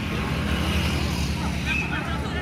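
Distant voices of players and spectators over a steady low rumble, with a few short high calls near the end.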